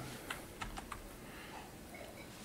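Computer keyboard being typed on: a scattered run of light, faint keystrokes, most of them in the first second.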